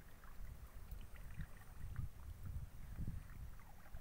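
Water moving and lapping around a person wading waist-deep, over a low uneven rumble, with a few faint small drips and splashes as wet fishing line is handled.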